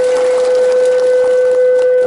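A single steady tone held at one pitch without wavering, over a background of crowd noise.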